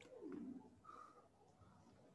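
Near silence, broken by a faint short falling sound near the start and a faint brief tone about a second in.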